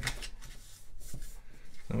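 Origami paper rustling as it is handled and pressed flat on a wooden table, with a few short crackles of the creased sheet, one near the start and a couple about a second in.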